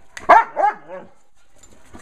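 A young German Shepherd-type dog barking twice in quick succession, two short sharp barks in the first second.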